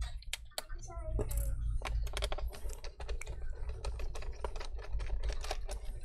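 PH1 Phillips screwdriver backing small screws out of an HP laptop's bottom case: a run of light clicks and ticks as the tip works the screws and taps the case.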